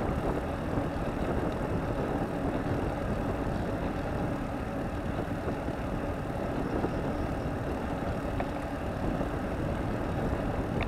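Steady rushing wind and road noise from a bicycle-mounted camera riding along at speed, with no distinct events.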